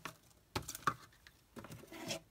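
Hands handling small craft items on a desk mat, making a few light clicks and taps in short clusters about half a second and a second and a half in.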